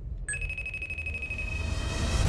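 A steady, high electronic tone, the alert of an incoming FaceTime video call, starts about a quarter second in over a low rumble.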